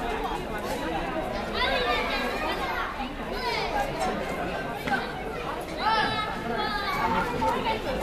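A crowd of children and adults chattering and calling out, with high children's voices over a general murmur.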